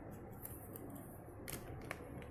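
Faint scratching and a few light ticks of a marker pen's tip on paper, over low room noise; one tick about half a second in and two close together near the end.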